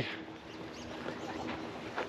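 Faint bird calls over a quiet outdoor background.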